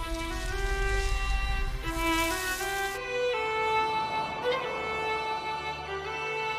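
Violin melody of held, changing notes over a music score, with a low rumble underneath for the first half.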